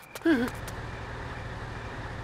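Low, steady hum of a bus engine idling. A short vocal syllable sounds just after the start.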